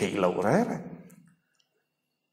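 A man speaking through a microphone, his voice trailing off about a second in, followed by near silence with a few faint clicks.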